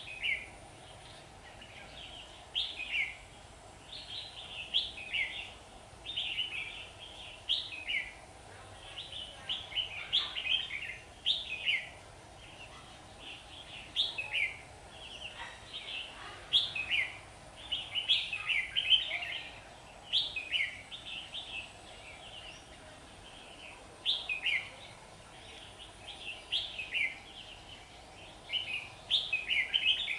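Red-whiskered bulbuls singing: short, bubbling, warbling phrases repeated every second or two. This is the competitive territorial song that a caged decoy bulbul uses to draw a wild bird in.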